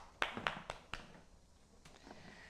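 A hand patting a horse's neck: about five quick slaps in the first second, then one fainter pat near the end.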